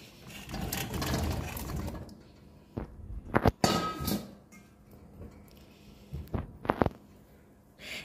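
Whole figs tipped from a metal colander into a stainless steel pot of sugar syrup: a rush of fruit dropping and splashing into the liquid over the first two seconds, then several sharp metal knocks and clinks against the pot between about three and seven seconds in.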